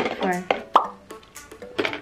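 A single short, sharp plop about three-quarters of a second in, between brief snatches of a woman's voice.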